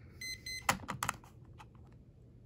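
Electronic alarm giving pairs of short high beeps, then a few clicks and knocks of it being handled, after which the beeping stops.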